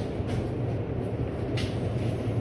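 Steady low rumble and hum of supermarket background noise, with a brief hiss about one and a half seconds in.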